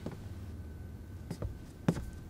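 Footsteps: two soft steps in the second half, over a faint steady room hum.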